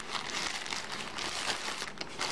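Grey plastic postal mailer bag crinkling and rustling as it is handled and squeezed, a continuous run of crackly rustles.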